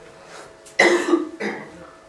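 A man coughing twice, loud and close to the microphone: a sharp cough about a second in and a shorter one half a second later.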